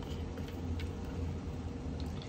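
Faint clicks of a plastic lid being twisted onto a plastic water bottle, over a steady low hum.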